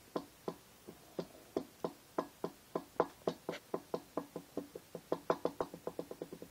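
A run of sharp knocks, roughly three or four a second at uneven spacing, coming faster near the end.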